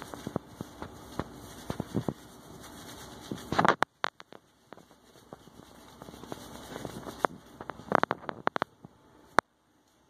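Handling noise: scattered rubbing, clicks and knocks as a wet cat is held in a bathtub and the phone camera is moved. A steady hiss runs underneath and cuts off suddenly about four seconds in.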